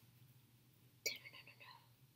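Near silence: room tone, with one brief faint whisper about a second in.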